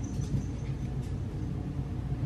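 Steady low rumble, with a few faint crisp crunches of a Hermann's tortoise biting at dandelion leaves.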